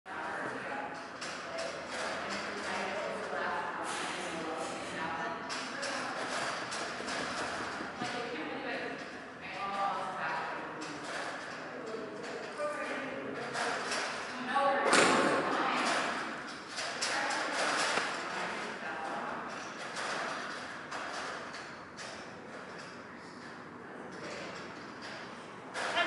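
Indistinct voices talking in a large hall, with scattered knocks and thuds.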